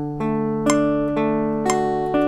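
Archtop guitar playing a D major arpeggio, single notes picked one at a time about twice a second and left to ring over a sustained low note, so they overlap into a chord.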